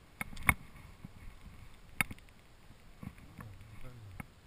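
Sharp clicks and knocks from a spinning rod and reel being handled as the rod is raised. The two loudest come about half a second and two seconds in, with a low sliding sound near the end.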